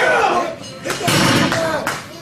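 Men's voices calling out in a room, with two sharp slap-like cracks, one about a second in and one near the end.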